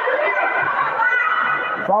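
Indistinct voices of players and spectators chattering in an indoor sports hall.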